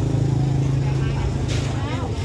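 A motorbike engine running close by with a steady low hum that fades away about a second in, amid market chatter.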